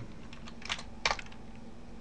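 Computer keyboard keystrokes: a few separate key clicks as a terminal command is typed, the two loudest about a second apart, over a faint steady hum.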